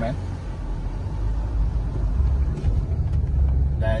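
Chevrolet car's engine and road rumble heard from inside the cabin as it pulls away, a steady low rumble that grows slightly louder.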